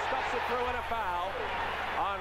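A man's voice talking over the steady noise of an arena crowd, the thin, muffled audio of an old television game broadcast.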